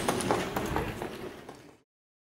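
Hoofbeats of a trotting harness horse pulling a sulky, about four beats a second, fading as it moves away. The sound then cuts off abruptly to silence near the end.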